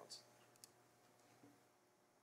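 Near silence: room tone in a council chamber, with the tail of a spoken word at the very start and one faint click about half a second in.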